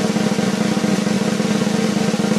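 Suspense snare drum roll, a steady rapid rattle with no break, played as a reveal is announced.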